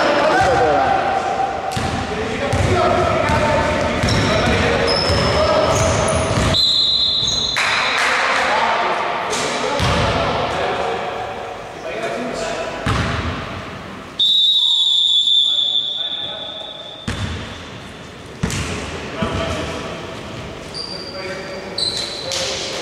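Basketball bouncing on a hardwood gym floor during play, with players' voices echoing in a large sports hall. Two long referee-whistle blasts come about seven seconds in and again about fourteen seconds in.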